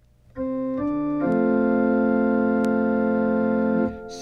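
Electronic keyboard on an organ voice playing a short introduction to a sung Gregorian-tone psalm. Chords change twice in the first second and a half, then one chord is held steady for about two and a half seconds and released just before the end.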